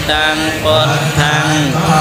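Theravada Buddhist monks chanting together in a steady, continuous recitation.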